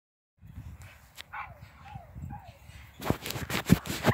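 Bully puppies giving a few short, thin whines that fall in pitch, over a low rumble. A cluster of sharp knocks comes in the last second, the loudest sound.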